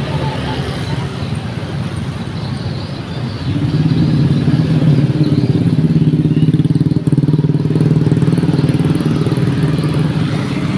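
Motorcycle and scooter traffic passing close on a busy street. About three and a half seconds in, a small motorcycle engine running close by becomes the loudest sound, a steady hum.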